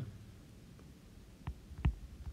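A stylus tapping on an iPad's glass screen during handwriting, two short taps near the end with a soft thump to each.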